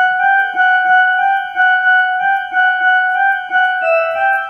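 Casio CT-X9000IN electronic keyboard playing a single-note melody in a piano-like tone, about three notes a second rocking between two neighbouring high notes, stepping down lower near the end.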